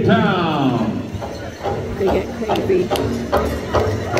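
Live arena sound at a powwow: a man's voice over the public address, drawn out and falling in pitch, then a run of sharp, irregular clicks and knocks.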